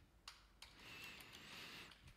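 Near silence, with a few faint computer-keyboard key clicks as a word is typed.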